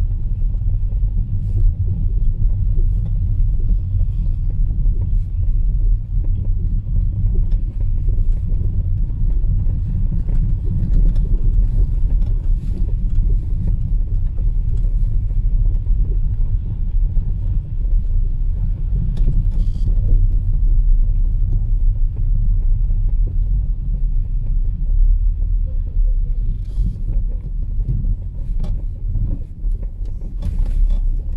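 Car driving slowly over a wet, slushy, rutted road: a steady low rumble of engine and tyres, with a few faint clicks.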